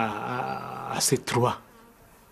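A man's voice holding one drawn-out hesitation sound at a steady pitch for about a second, then a few quick spoken syllables, then quiet.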